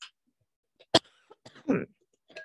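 A woman coughing, set off by an itchy throat: a short, sharp cough about a second in, then a longer, louder one with a falling voiced tail soon after.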